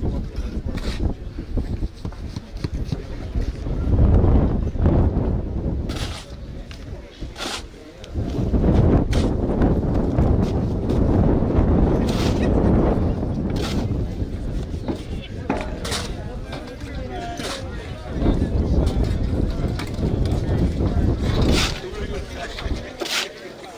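Wind buffeting the microphone in gusts, with a shovel now and then scraping through wet cement mix on the ground.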